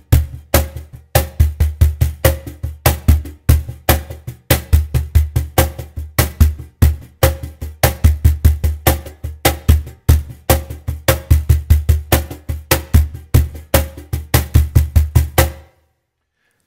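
Cajon played with bare hands in a samba-reggae groove: deep bass tones and sharp high slaps, with quieter fingertip notes filling the spaces between them. The rhythm stops just before the end.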